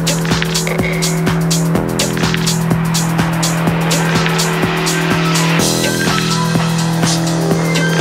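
Driving electronic techno: a steady kick-drum beat over a held bass note, with ticking hi-hats. About five and a half seconds in, a bright rising noise sweep comes in, followed by short, high synth notes.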